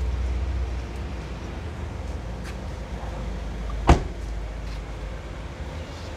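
A low steady rumble with one sharp click or knock about four seconds in, and a couple of fainter ticks.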